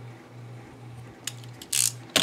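Craft knife blade trimming the edge of a paper mini-book cover: a few light clicks, then a short scratchy cut through the paper near the end. A low hum pulses about twice a second underneath.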